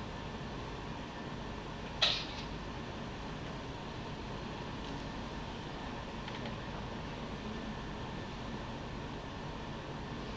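Steady, faint room noise with no speech, broken by one sharp click about two seconds in.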